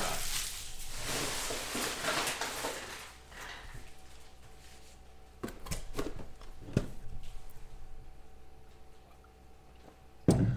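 Trading-card packs and a cardboard card box handled on a table: soft rustling for the first few seconds, then a few light knocks about halfway through as the box is picked up.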